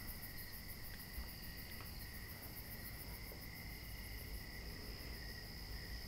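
Crickets chirping steadily and faintly, a fast, even pulsing trill.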